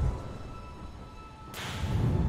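Logo-animation sound design: a cinematic music bed whose low rumble and ringing tone fade away, then a sharp whip-like whoosh about one and a half seconds in.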